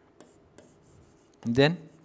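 Faint scratches and light ticks of a pen writing on an interactive whiteboard screen, broken about one and a half seconds in by a single short spoken word.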